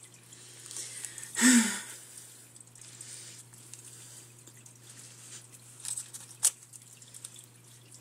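A steady low hum in a small room, with a short strained grunt and breath from a woman about a second and a half in as she tugs at a stubborn chin hair with tweezers, and a single sharp click near the end.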